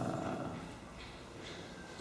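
A man's drawn-out, low hesitation sound ("uh") while he pauses to recall something, dying down to quiet room tone within the first half-second.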